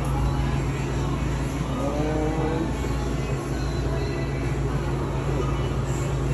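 Steady low machine hum with faint voices in the background.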